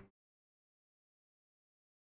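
Dead silence: the sound track cuts out completely, with no room tone at all.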